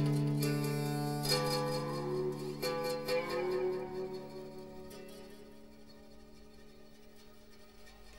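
Closing notes of a folk song on a plucked string instrument: a few last notes picked over a ringing chord, all fading away to a faint tail.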